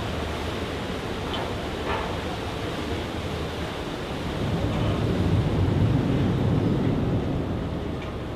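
Steady low rumble and wash of noise on a docked ferry's open car deck, swelling for a few seconds in the second half.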